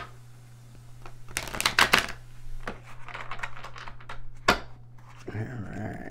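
A tarot deck being shuffled by hand: a quick run of card clicks about a second and a half in, then scattered flicks, and one sharper snap of the cards about four and a half seconds in.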